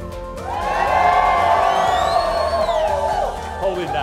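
A crowd shouting together in answer to a call, swelling about half a second in and held for nearly three seconds, with a few high whoops over it.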